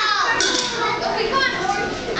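Children's voices calling out and chattering over one another, with a short sharp noise about half a second in.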